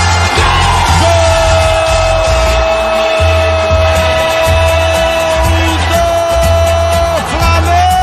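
A radio football commentator's long, held goal cry, sustained for about six seconds and then taken up again near the end, celebrating a converted penalty. Under it runs music with a steady, pulsing low beat.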